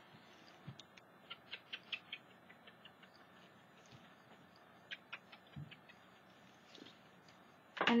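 Faint, irregular light clicks and taps of an ink blending tool being dabbed on an ink pad and rubbed along the edges of a paper card. The clicks come thickest in the first couple of seconds and again past the middle, with one soft thud.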